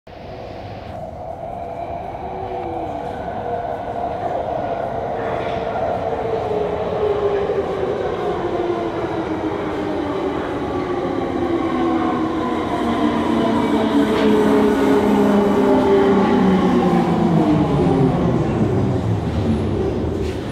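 Wagonmasz 81-series metro train arriving at a station platform and braking. It grows louder as it comes in, and its motor whine falls steadily in pitch, dropping sharply near the end as the train slows to a stop.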